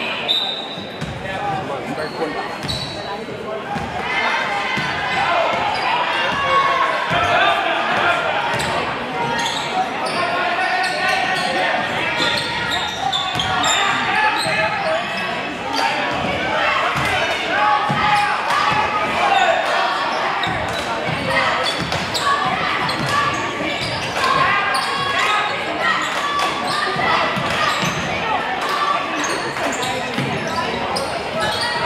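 A basketball bouncing on a hardwood gym floor as it is dribbled, under steady crowd chatter and players' calls that echo in the gym.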